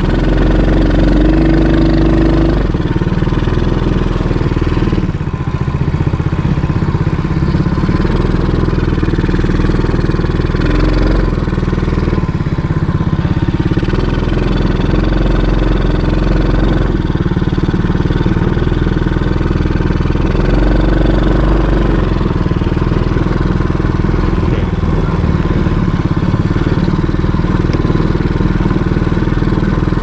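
Small ATV engine running under way on a dirt trail, heard from the rider's seat; the engine note rises and falls several times as the throttle is opened and eased.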